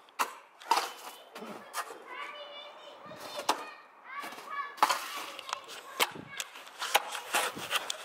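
A long-handled ice chopper striking and breaking up packed snow and ice on pavement: a run of sharp chops, a little under one a second. Children's voices are heard between the strikes.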